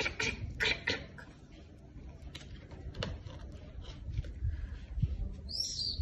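Quiet outdoor pause with a few soft handling clicks as a picture-book page is turned, and a short bird call near the end.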